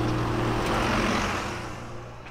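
A red double-decker bus passing close by, its engine and road noise swelling to a peak about a second in, then dying away.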